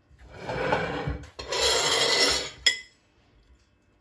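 Crisp baked shredded-pastry crust of an othmaliyeh cake crunching and rasping as a metal server cuts through and lifts a slice, in two scraping strokes. It ends with one sharp clink of metal on a plate about two and a half seconds in.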